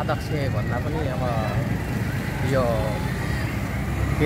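A man talking in short phrases over the steady low rumble of passing street traffic.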